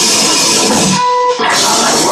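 Melodic death metal band playing live: distorted electric guitars and drums at full volume. About a second in the band cuts out for half a second, leaving a lone held tone, then comes straight back in.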